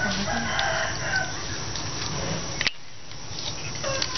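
A fowl calling, a drawn-out, crow-like call in about the first second, over background noise that drops suddenly partway through.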